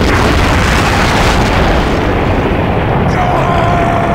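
Anime explosion sound effect: a large blast that starts suddenly and then goes on as a loud, sustained rumble.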